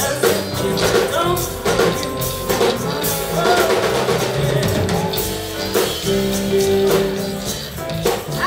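Live funk and soul band playing: drum kit and electric bass under electric guitar and horns, with a woman singing.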